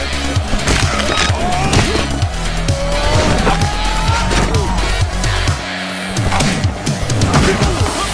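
Action movie fight-scene soundtrack: loud music with a pulsing bass line, layered with rapid whooshes and hit effects. The bass drops out briefly about six seconds in.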